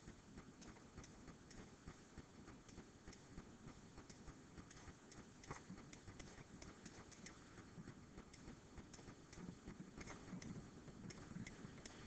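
Near silence: faint room tone with scattered light ticks from a stylus writing on a pen tablet.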